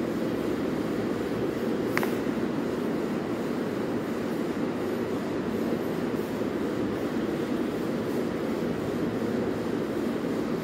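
Steady low background rumble with no rhythm, with one sharp click about two seconds in.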